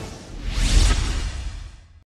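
A rising whoosh sound effect over a deep rumble, swelling to its loudest a little under a second in and then fading away: the sting of an animated channel logo.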